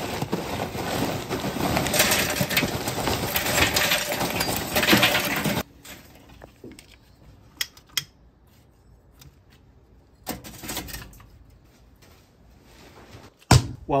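Lump charcoal poured into a metal chimney starter, a dense clattering rush that stops abruptly about five and a half seconds in. Then two sharp clicks of a stick lighter as the coals are lit.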